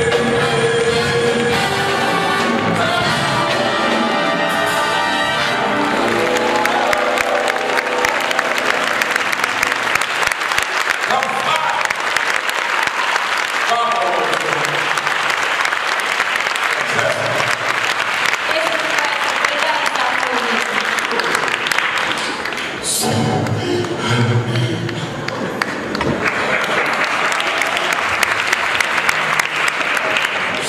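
Jazz big band ending a number, its last chords fading over the first few seconds, followed by long audience applause.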